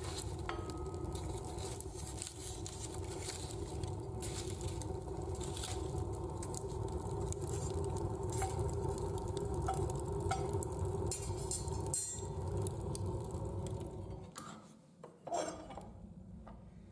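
Wood and coal fire burning in the open loading chamber of an MPM DS dual-fuel boiler: a steady rumble of flames with scattered crackles and pops. The sound drops away sharply near the end.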